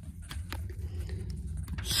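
Handling noise from a handheld camera being swung around: a steady low rumble with a few faint clicks and rustles.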